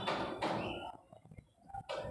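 A dry-erase marker writing a word on a whiteboard: a short run of faint strokes, mostly in the first second.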